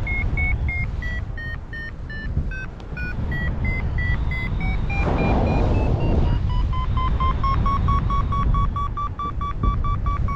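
Paragliding variometer beeping in a climb: strings of short beeps whose pitch steps down, climbs again about five seconds in, then turns into a faster run of lower beeps for the last few seconds. Wind rumble on the helmet microphone runs underneath, with a gust of wind hiss about five seconds in.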